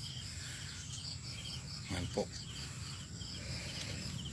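Insects chirping steadily in the background, a high, even pulsing that repeats a few times a second.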